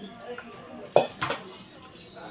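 Metal kitchen utensils knocking together: one sharp clank about a second in, followed by two lighter knocks.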